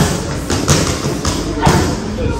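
Boxing gloves striking focus mitts during pad work: about four sharp smacks over two seconds.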